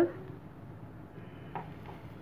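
Faint handling sounds of boiled potato being crumbled by hand into a frying pan of minced chicken: mostly quiet background noise with two soft, brief sounds late on.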